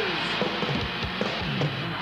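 Rock band music with electric guitar, bass and drum kit. A held note slides down at the start, then the drums and bass carry on between vocal lines.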